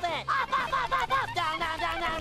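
Cartoon soundtrack: a fast run of short, voice-like pitched notes, several a second, over a steady low music bed.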